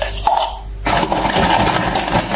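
Frozen pineapple chunks rattling and scraping against a plastic cup as a hand rummages in it, close to the microphone. A few sharp clicks first, then a dense, continuous crackling from about a second in.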